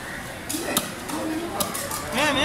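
Two sharp knocks on a wooden chopping block as fish is cut and handled, the first about a second in and louder, with voices talking in the background.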